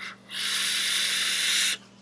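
A long draw on a box-mod vape: a steady airy hiss of air pulled through the tank's airflow and coil for about a second and a half, stopping abruptly near the end.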